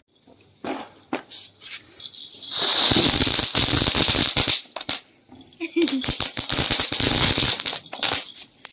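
Ground fountain firework spraying sparks, with a steady hiss and dense crackling. The spray comes in two spells, with a short drop about five seconds in.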